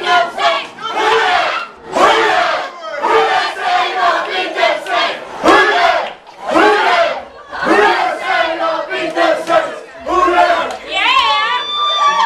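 A crowd of football fans yelling and shouting in celebration, loud shouts coming one after another. Near the end a long, high-pitched held yell rises above the rest.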